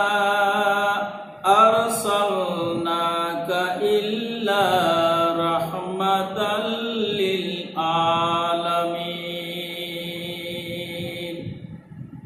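A man's voice chanting Quranic recitation in Arabic, slow and melodic, with long held notes in several phrases and brief breaths between them; it stops shortly before the end.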